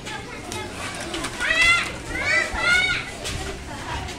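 Children's voices shouting at play, with two loud, high-pitched calls about a second and a half and two and a half seconds in, over a background of outdoor activity.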